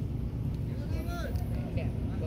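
Faint voices of other people talking over a steady low rumble.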